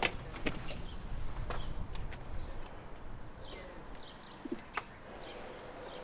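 A few light clicks and knocks as a sewer inspection camera's push rod and reel are handled and fed into the drain, over a faint steady background.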